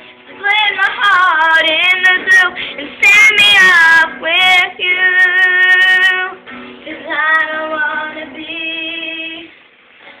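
A girl singing into a handheld microphone, holding long notes between shorter phrases without clear words, with a man strumming a small acoustic guitar.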